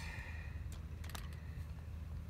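A few faint clicks as a directional antenna is turned by hand, over a steady low background hum.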